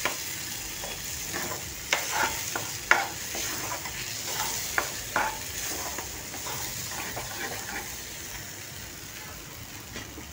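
A spoon stirring and scraping a thick masala paste as it fries in a steel pan: irregular clicks and scrapes of the spoon against the metal over a steady sizzle. The stirring dies away near the end, leaving the sizzle, which slowly fades.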